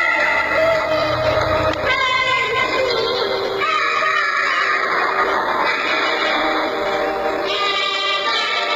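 A child singing into a microphone over a backing track, amplified through a stage sound system, with long held notes.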